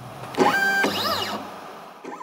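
Stepper motors of a hobby CNC router whining as the carriage is jogged into position. One whine rises and holds briefly, then a second rises and falls away as the motors speed up and slow down.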